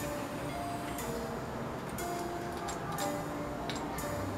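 Background music: a light melody of short held notes, with a few faint ticks.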